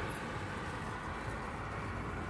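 Steady low background rumble of distant city traffic, with no distinct events.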